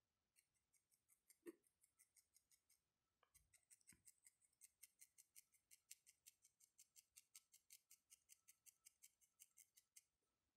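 Felting needle stabbing repeatedly through wool into a foam pad to compact it. The result is faint, crisp, rapid clicking at about five pokes a second, with a brief pause about three seconds in.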